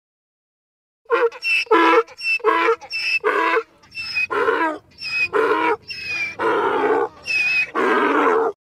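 Donkey braying: a long run of loud alternating hee-haw calls that starts about a second in.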